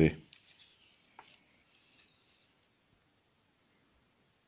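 The end of a spoken word, then a few faint light clicks and a soft rustle of hands handling a small wooden napkin ring and a pyrography pen, fading to near silence about halfway through.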